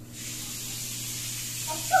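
Bathtub tap suddenly turned on, water running into the tub with a steady hiss.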